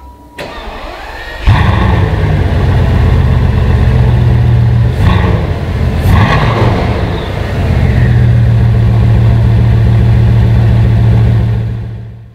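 Bugatti Veyron 16.4 Super Sport's 8.0-litre quad-turbocharged W16 engine starting: it catches suddenly and loudly about a second and a half in and settles into a fast idle. It is blipped twice around the middle, then idles steadily until it fades out near the end.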